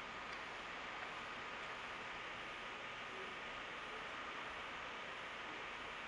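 Faint, steady hiss of the recording's background noise, with a faint thin high tone running under it.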